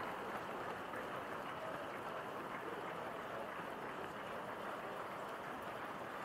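Footfalls of a large pack of marathon runners on an asphalt street, many running shoes striking at once in a steady, dense, even sound.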